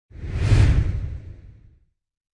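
Logo-intro whoosh sound effect with a deep low end, swelling quickly to a peak about half a second in and fading away over the next second.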